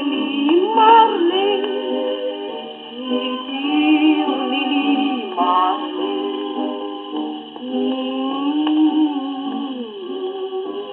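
A 1941 Odeon 78 rpm shellac record playing on a gramophone: a woman singing over band accompaniment. The sound has the thin, narrow range of an old disc, with no deep bass and no top.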